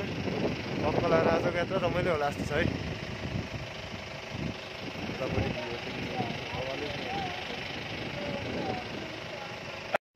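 Steady engine and road noise of a moving vehicle, heard from on top of it, with people talking over it.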